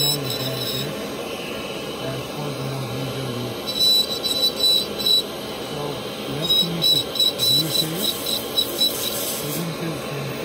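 Dental lab handpiece with a bur grinding down a stone model's teeth: a steady motor hum with gritty cutting bursts from about four seconds in.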